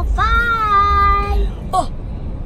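A child's voice sings one long, held note for over a second, then gives a short yelp that drops in pitch near the end.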